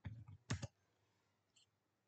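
A few faint, quick clicks, then one sharper click about half a second in, from a computer keyboard and mouse as code is pasted onto a whiteboard page.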